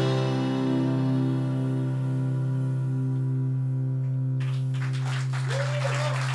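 A live rock band's closing chord held and ringing out: a steady low bass note with guitar and piano notes above it, slowly fading. Applause starts about four seconds in, over the dying chord.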